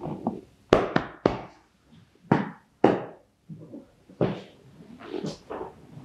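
Hands slapping on a person's back in a percussive massage: a run of sharp, irregular slaps, loudest in the first three seconds, then softer ones.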